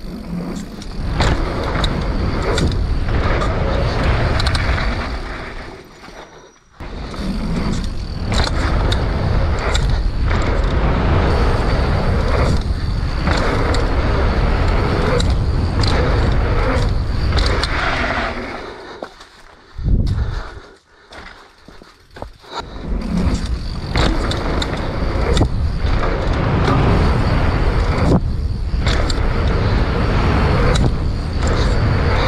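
Mountain bike ridden fast down a dirt jump line: a steady rush of wind and tyre noise with frequent rattles and clicks from the bike. It eases off briefly about six seconds in and again for a couple of seconds around twenty seconds in.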